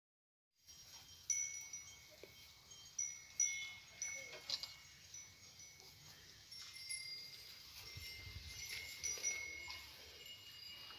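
Light chiming: several high ringing tones, struck sharply and left to ring, starting just under a second in after silence.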